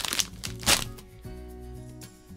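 Crinkling of candy packet wrappers handled in the hands, with two sharp rustles, one at the start and one just under a second in, over soft background music with held notes.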